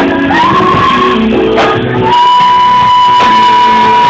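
Live band playing with singing. A high note slides up and is held briefly, then from about two seconds in a long, steady high note is held over the band.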